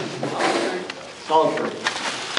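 Indistinct voices with handling noise close to the microphone: a plastic bag rustling, and a sharp knock near the end.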